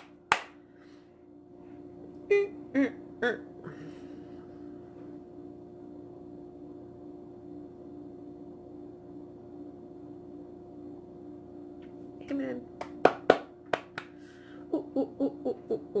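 A woman laughing, with sharp hand claps just after the start and a quick run of three more about three-quarters of the way through, over a steady low hum. Several quiet seconds in the middle hold only the hum.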